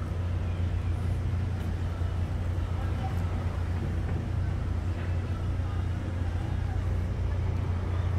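A steady low mechanical hum, even in level, with faint background noise over it.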